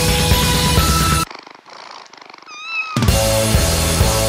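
Loud rock music stops about a second in. In the break a cat purrs, and near its end gives one short meow that rises and falls. The music comes back in about three seconds in.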